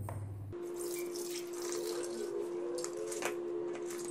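Soaking water and soaked moong dal poured from a plastic bowl through a stainless steel mesh strainer into a steel bowl, splashing as the dal is drained. A steady hum runs underneath.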